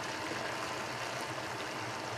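Thick elk-meat tomato sauce simmering in a frying pan, a steady soft sizzling hiss.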